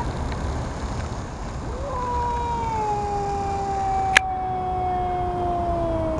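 A domestic cat's long, low warning yowl in a standoff with another cat. It starts about two seconds in and is held to the end, sliding slowly down in pitch. One sharp click comes about four seconds in.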